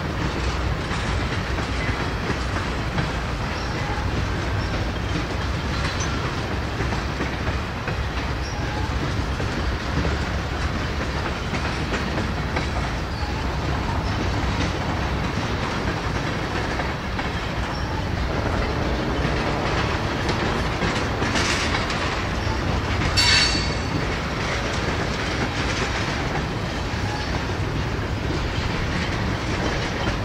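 Tank cars of a long freight train rolling steadily past, a continuous rumble of steel wheels on rail. About two-thirds of the way through, a brief high-pitched wheel squeal stands out as the loudest moment.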